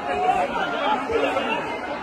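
Speech and crowd chatter in a large hall, with a woman talking into a microphone.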